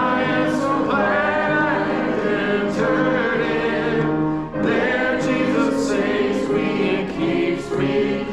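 A congregation singing a hymn together in unison, holding long notes, with a brief break between lines about four and a half seconds in.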